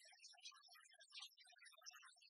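Near silence, with only faint, scattered high chirps and no ball strikes.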